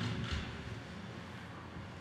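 A pause between phrases of a man's speech at a podium microphone: faint steady room noise, with a soft trace of breath or voice near the start.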